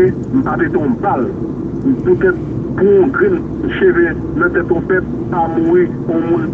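A person talking continuously over a steady low background rumble.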